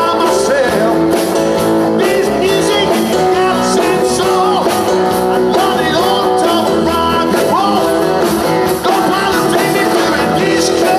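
A live band playing a country-rock song: a male lead vocal over acoustic and electric guitars, drums and keyboard.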